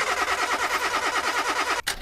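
Car engine sound effect, the engine cranking over to start in a fast, even rhythm of about ten beats a second, cutting off suddenly near the end.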